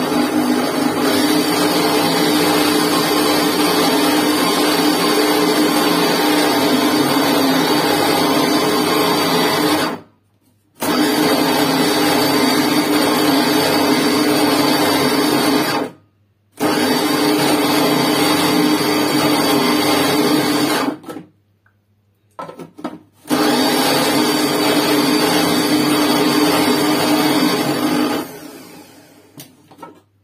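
Electric blender puréeing cooked tomato sauce, its motor running steadily in four bursts (a first of about ten seconds, then three of about five) with short pauses between. It stops about two seconds before the end.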